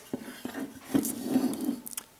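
A small metal DC hobby motor being picked up and handled against a wooden block, giving a few light clicks and knocks.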